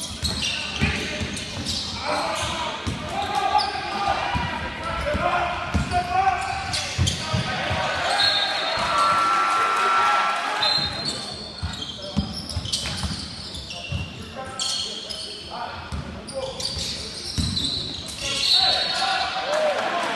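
Basketball bouncing on a hardwood court during play, with repeated short knocks echoing in a large gym, over indistinct shouts and chatter from players and spectators.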